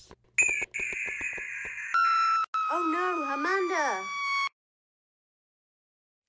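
Synthetic electronic tones: first a steady high tone with rapid clicking for about a second and a half, then a new set of tones sinking slowly in pitch. A voice sounds over them for about a second and a half, and everything cuts off abruptly about four and a half seconds in.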